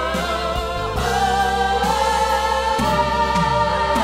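Musical-theatre singing with orchestra: long held notes sung with vibrato, backed by ensemble voices over a steady low bass.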